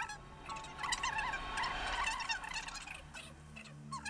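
Faint chorus of short, repeated chirping and warbling animal calls that waver up and down in pitch, growing quieter in the last second.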